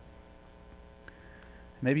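Faint, steady electrical mains hum from the amplified sound system.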